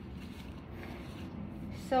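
Faint rubbing of a paper towel wiping dusty plant leaves, over a steady low room hum.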